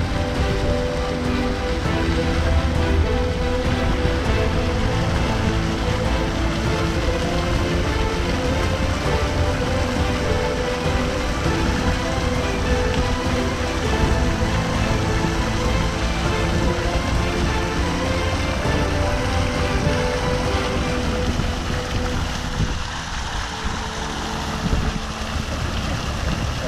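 Fountain jets spraying and splashing into a stone basin: a steady rush of falling water over a low rumble. Background music of long held notes plays over it and thins out near the end.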